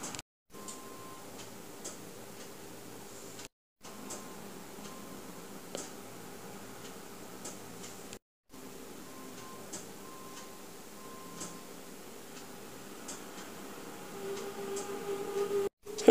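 Quiet room tone with faint scattered ticks and soft rustles from hands folding a thin samosa pastry sheet. The sound drops to silence briefly four times, at edit cuts.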